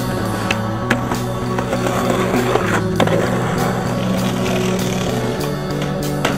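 Skateboard wheels rolling on concrete, with sharp clacks of the board about a second in and again around three seconds, mixed under a guitar rock soundtrack.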